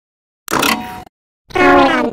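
Two short, clipped vocal sounds in a cartoon character's voice, each about half a second long, separated by dead digital silence; the second is a held, pitched voice sound.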